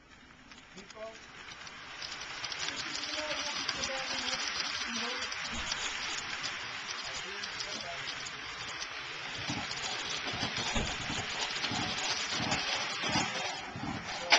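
HO scale model freight cars rolling past on the track, a steady rattling hiss of small wheels on rail that builds over the first couple of seconds, with scattered low knocks in the second half.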